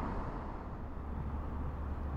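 Steady low outdoor rumble with no distinct events, heaviest in the deep bass.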